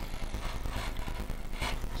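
Utility knife blade scoring a thick, many-layered cardboard tube, an irregular dry scratching with fine ticks, over a steady low hum.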